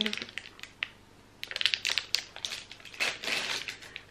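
Plastic wrapper of a pregnancy test being torn open and crinkled by hand. The crackling comes in a dense run starting about a second and a half in and lasts about two seconds.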